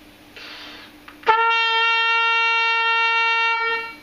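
B-flat trumpet played open, without a mute: a short intake of breath, then one tuning B flat that starts cleanly and is held steady and pretty loud for about two and a half seconds before it stops.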